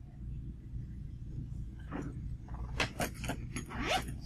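Laptop keyboard being typed on: a quick, uneven run of clicks in the second half, over a steady low room hum.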